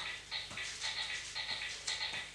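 Faint soft footsteps in flat soft-soled shoes on a floor mat, a few light taps a second, over a low steady room hum.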